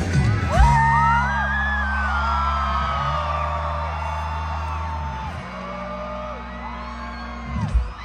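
Live rock band holding long low chords on bass and guitars, changing twice and slowly getting quieter, under a crowd whooping and yelling. A single drum hit sounds near the end.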